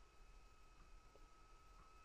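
Near silence: room tone with a faint, steady high-pitched tone.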